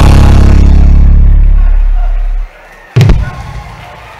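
A live band's held low chord rings on and fades, dropping away about two and a half seconds in. A single sudden loud hit follows about three seconds in, then fades.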